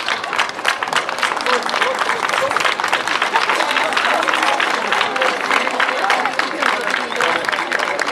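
Audience applauding steadily, with voices heard faintly through the clapping.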